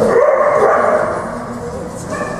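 Dog barking while running an agility course in a large indoor hall, loudest in the first second and tailing off.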